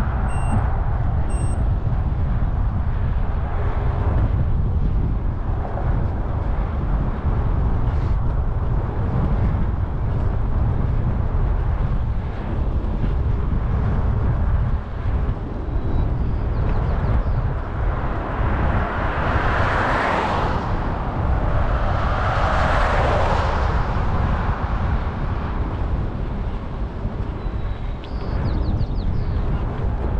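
Steady wind rumble on a bicycle-mounted microphone while riding along a highway shoulder. Two passing vehicles each swell up and fade away, one about two-thirds of the way through and another a few seconds later.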